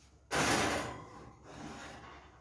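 A loud scraping rub, starting about a third of a second in and fading over about half a second, as the ceramic meatloaf dish is slid into the oven, followed by fainter rustling and handling.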